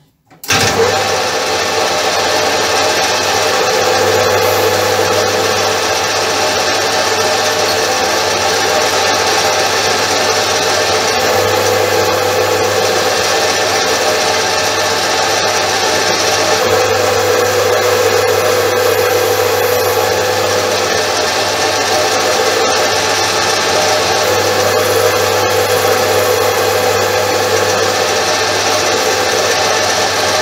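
Metal lathe starting up about half a second in, then running steadily as a ball-radius turning tool cuts a hardened, chrome-plated steel hydraulic piston rod, shedding curled chips. The cut runs without chatter or vibration.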